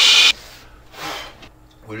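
A person blowing hard by mouth into the valve of an inflatable snow tube: a loud rush of air that cuts off abruptly about a third of a second in, then a short, fainter rush of air about a second in.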